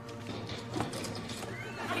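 A few light knocks, then a studio audience starting to laugh near the end.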